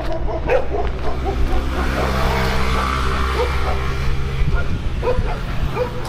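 Stray dogs barking with short barks scattered through, over a steady low hum that swells in the middle.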